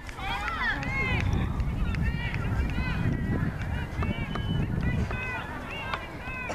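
Distant shouting voices carrying across an open field: short, repeated calls with no clear words, over a low rumble of wind on the microphone.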